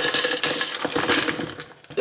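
Frozen fruit pieces poured from a plastic bag, rattling and clattering into a clear plastic blender cup, dying away near the end.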